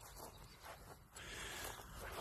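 Faint outdoor background noise with no clear event, a little louder after the first second.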